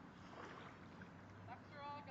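Faint sloshing of shallow water as someone wades with a small dog swimming alongside, with a short high-pitched call near the end.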